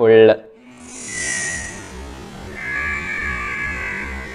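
A man's voice for the first moment, then dark ambient background music: a low pulse about twice a second under faint, held high tones, with a brief hiss about a second in.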